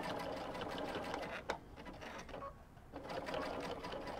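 Domestic sewing machine with a walking foot, stitching a wide decorative smocking stitch through minky plush binding in a fast, even rhythm. There is a sharp click about one and a half seconds in, a brief lull, and stitching resumes shortly before the end.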